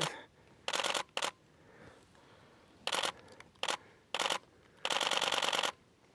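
Canon EOS-1D X DSLR shutter firing in rapid bursts: several short bursts of clicks, then a longer burst of about a second near the end.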